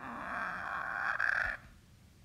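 A recorded dinosaur growl, a steady creature call lasting about a second and a half before it cuts off, leaving a faint tail.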